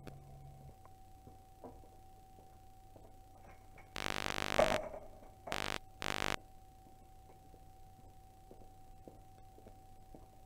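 A privacy curtain drawn along its ceiling track: one longer slide with a pitched squeal about four seconds in, then two short slides right after.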